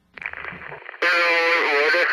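A person's voice with a thin, narrow sound, as if heard through a radio or phone speaker, starting about halfway in after a short stretch of crackling hiss.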